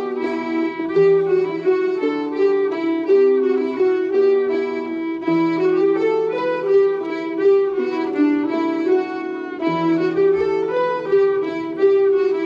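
Breton an dro dance tune played by a traditional ensemble: fiddle and two transverse flutes carrying the melody over button accordion and Celtic harps.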